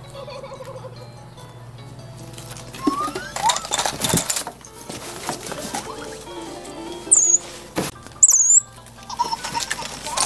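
Light background music plays over scrabbling and rustling as a baby capuchin monkey climbs on a fabric pet stroller. Two loud, brief, high-pitched sounds come about seven and eight and a half seconds in, with a sharp knock between them.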